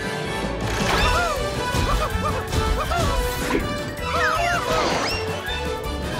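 Cartoon action sound effects, a continuous crashing clatter, over lively background music with sliding, swooping notes.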